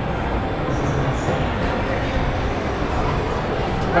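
Steady background din of a busy indoor arcade: a mix of distant voices and game-machine noise, with no distinct dart hit standing out.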